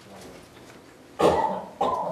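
A person coughing twice in quick succession, a little over a second in, loud against the quiet room.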